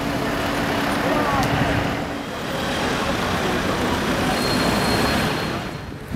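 Street traffic at a city intersection: a steady wash of road noise from passing vehicles, with a low steady hum through the first two seconds.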